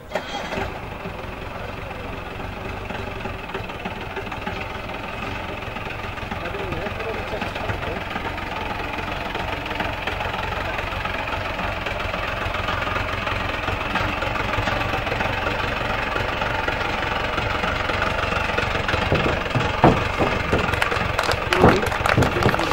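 Mahindra Bolero SUV engine starting up just as the sound begins, then running at low speed as the vehicle creeps through a test course, getting gradually louder.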